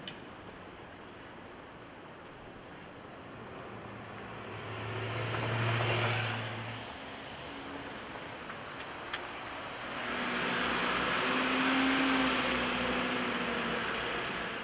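Street traffic: a car passes, rising and then fading about halfway through, and another vehicle grows louder and stays loud over the last few seconds.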